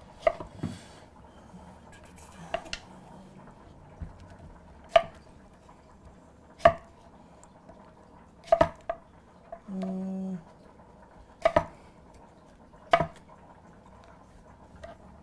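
A knife cutting firm green mango on a cutting board: sharp, irregular knocks as the blade meets the board, about one every second or two, some in quick pairs.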